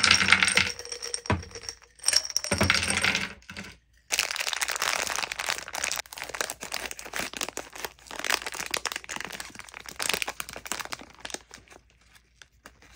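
Gummy candies tumbling out of a glass jar onto a wooden platter, the glass clinking and ringing, in two pours over the first few seconds. From about four seconds in, a plastic candy bag crinkles steadily as it is handled, stopping near the end.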